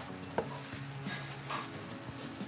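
Masking tape being pulled off its roll, a faint crackling rustle, with a small click about half a second in.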